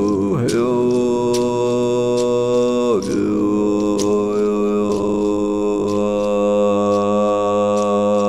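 Chanted vocal music: a voice holds two long, steady notes, the first about three seconds and the second over five, each sliding into pitch at its start. Light percussive taps sound about once a second.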